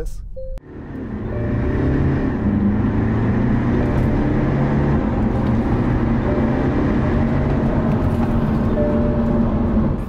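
Modified BMW petrol engine pulling hard under full-throttle acceleration during a 0-100 km/h run, heard from inside the cabin. It builds up within about a second of the start and then holds loud and steady.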